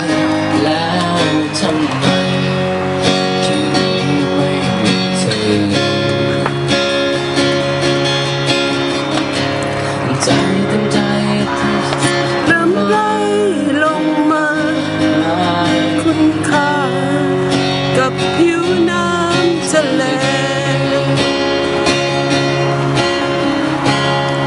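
A man singing into a handheld microphone, accompanied by a strummed acoustic guitar, played live.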